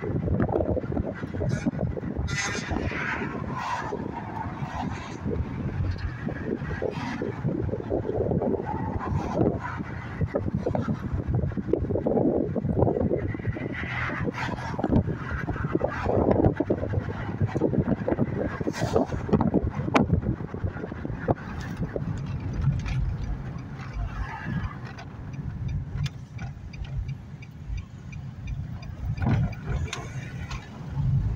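Road and engine noise of a moving car, heard from inside the cabin as a steady low rumble.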